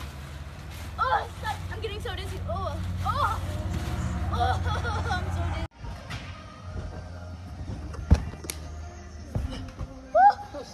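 High children's voices and squeals over a steady low hum. After a sudden cut the sound is quieter, with one sharp thud a little after eight seconds.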